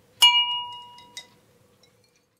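A single bright ding, struck once and ringing out for about a second, followed by a short click.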